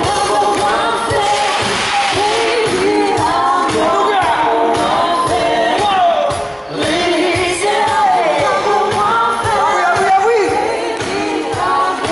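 Live pop music played loud through a hall's PA: a steady beat under a gliding, wordless sung vocal line. The music dips briefly about two-thirds of the way through.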